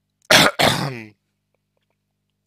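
A man clearing his throat: a sharp burst about a third of a second in, followed by a longer rasping sound that fades out around the one-second mark.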